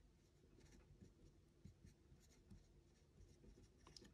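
Faint scratching of a felt-tip marker writing on a white board, in short strokes.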